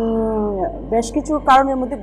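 A woman's voice: one drawn-out, slowly falling vowel, then a few short spoken syllables.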